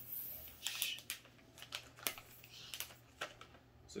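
Hard dried wasabi peas clicking irregularly as they are counted out and moved about on plates by hand, with a brief rustle of the plastic snack bag being handled.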